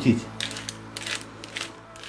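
A hand-twisted pepper mill grinding whole black peppercorns: a string of small dry clicks as the mill is turned.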